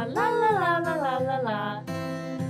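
A high voice sings a short wordless, gliding phrase, a playful imitation of field mice singing at the moon, over soft acoustic-guitar background music.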